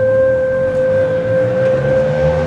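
Dance accompaniment music: a flute holding one long steady note over a soft low accompaniment.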